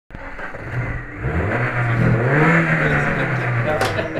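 Car engine running and revving, its pitch stepping up about a second and a half in and again a little later, then dropping back, with a sharp click near the end.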